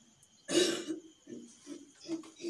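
A person gives one harsh cough, clearing the throat, about half a second in, followed by two short, quieter throaty sounds.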